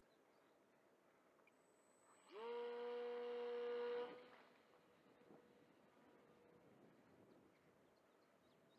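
Tiny TD .020 two-stroke glow engine of a model biplane, running at high speed with a steady, high buzzing note. The note comes in about two seconds in with a brief rise in pitch, holds for about two seconds, then drops away sharply and lingers faintly before fading out. The rest is near silence.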